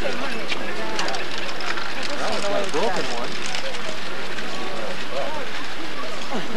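Flock of flamingos calling: many short overlapping calls that rise and fall in pitch, thickest about two to three seconds in and again near the end, over a steady hiss.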